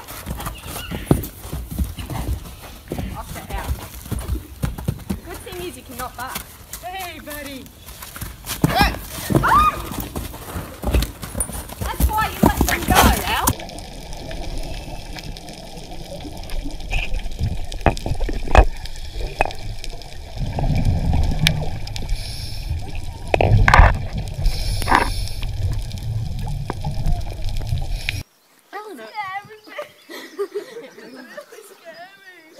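A horse moving and bucking on a dirt paddock, with hoof thuds and people's voices. About halfway through, this gives way to underwater sound with a low rumble and a few louder bursts. The sound cuts off suddenly about two seconds before the end.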